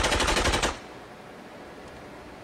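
A rapid burst of fully automatic rifle fire, shots evenly spaced in quick succession, cutting off suddenly under a second in.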